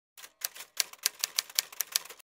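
Typewriter key clicks, a quick run of about five sharp strokes a second, used as a sound effect as on-screen text types itself out.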